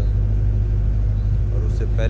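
Steady low rumble of a paddle boat under way at slow cruising speed, even in level throughout, with a man's voice faintly resuming near the end.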